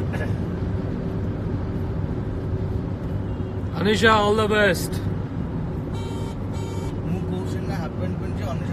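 Steady low road and engine drone of a moving car, heard from inside the cabin. A person's short, pitched vocal sound, with no words, rises above it about four seconds in.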